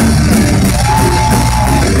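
Live rock band playing loudly with electric guitars, bass and drum kit between sung lines, with a single note held for about a second near the middle.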